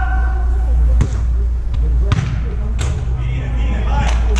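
A football being kicked on artificial turf: four sharp thuds from about a second in, over a steady low hum and players' voices.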